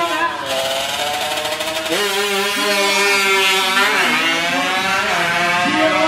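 Tuned Honda Wave drag scooter's single-cylinder four-stroke engine revving at the line, then launching with a sharp rise in pitch about two seconds in. The engine note dips briefly at gear changes near four and five seconds and climbs again each time.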